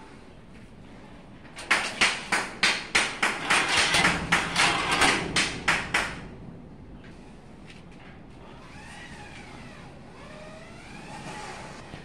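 A rapid run of sharp knocks, about three a second for some four seconds, then quieter wavering animal calls.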